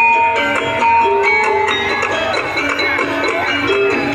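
Live music for a kethek ogleng dance: a melody of short ringing pitched notes over drums, playing steadily and loudly.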